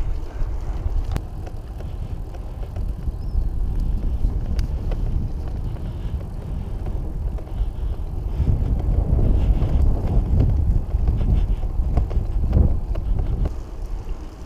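Wind buffeting the microphone of a camera on a moving bicycle, with the rumble of the tyres rolling on an asphalt lane. The low rumble grows louder in the second half.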